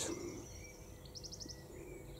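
Faint outdoor ambience with a small bird giving a quick run of about five high chirps a little over a second in, and a fainter chirp near the end.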